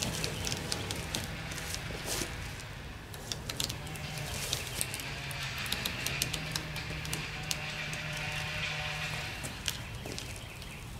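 Blue masking tape being peeled off a painted boat hull, with short crackling rips. From about four seconds in, steady held tones of faint music sit underneath.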